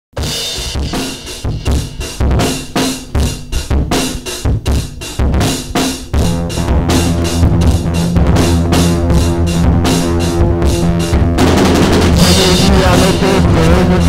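Instrumental intro of a rock song: a drum kit plays alone for about six seconds, then bass and guitar join in a steady riff over the beat. About eleven seconds in the full band comes in louder.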